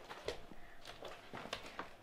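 A few faint, short taps and knocks in a quiet room, spread irregularly over the two seconds.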